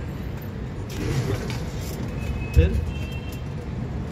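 Steady low background rumble. One short spoken word comes about two and a half seconds in, and a faint thin high tone sounds for about a second midway.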